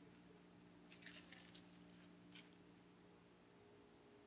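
Near silence: a faint steady room hum with a few faint short crackles about a second in and again near the middle.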